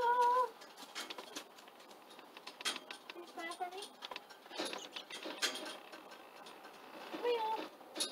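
A person's high-pitched voice in a few short snatches, over scattered light clicks and knocks.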